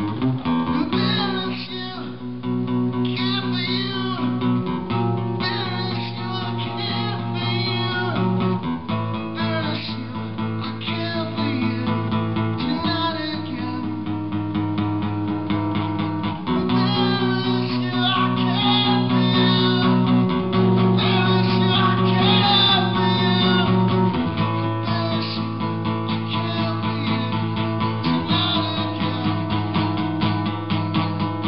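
Solo acoustic guitar played live, rapid picked and strummed notes over held bass notes, with the chord changing about every four seconds.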